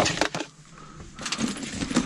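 Objects being handled and stowed in a cabinet: a few sharp clicks and knocks at the start, then, about a second in, a stretch of rustling with small clicks.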